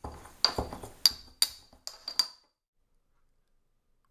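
A pestle grinding small pieces of leaf in a hard container: about five sharp clinks, roughly two a second, each with a brief ringing tone, stopping about halfway through.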